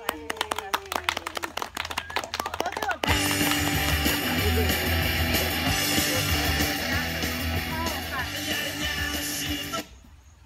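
A small group clapping, with some voices, for about three seconds; then recorded music starts suddenly and plays loudly until it cuts off just before the end.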